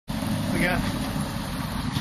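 Steady low rumble of a moving road vehicle, with a man briefly speaking over it.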